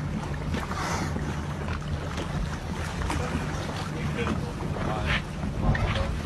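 Boat engine idling with a steady low hum, with wind noise on the microphone.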